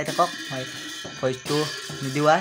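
Singing voices with a rhythmic rattling percussion accompaniment.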